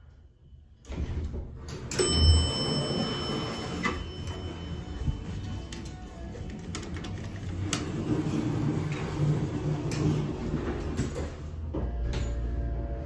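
Montgomery hydraulic elevator in use: a chime rings with steady high tones from about two seconds in, lasting a few seconds, amid door movement. Clicks follow as buttons are pressed, and a low steady hum builds in the second half.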